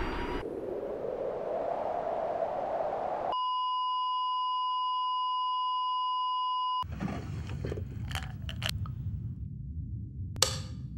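A jet aircraft's rushing noise rising in pitch, cut off abruptly by a steady pure beep of about 1 kHz, a broadcast test tone that holds for about three and a half seconds and stops suddenly. After it come irregular clicks and rustling of a small plastic bottle being handled.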